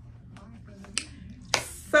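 Handling noise: a few light, sharp clicks, the clearest about a second in, then a short rustle near the end, just before a spoken "so".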